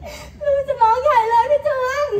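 A performer's voice imitating a newborn baby's whimpering cry: a wavering, wailing tone that starts about half a second in.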